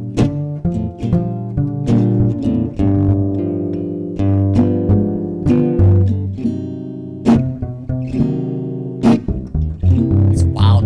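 Live small jazz band playing, with acoustic guitar prominent over a plucked upright bass.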